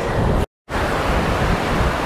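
Steady rush of small surf waves washing onto the beach, mixed with wind buffeting the microphone. The sound drops out completely for an instant about half a second in.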